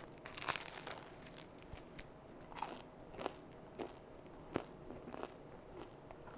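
Biting into and chewing crusty sourdough bread: faint, irregular crunches of the crust, scattered through the chewing.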